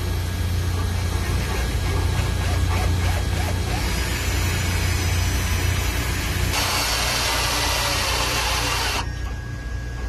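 A cordless drill with a step bit cuts through a steel motor-mount rail to make a new mounting hole, over a steady low hum. The cutting grinds louder about halfway through, is loudest for a couple of seconds, then drops off sharply about a second before the end.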